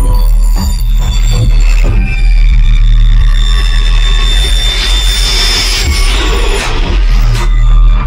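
Electronic dance music played loud from a DJ set, with a heavy deep bass line and steady high synth tones. In the middle the bass thins out while a hissing swell builds, then the full bass returns about seven seconds in.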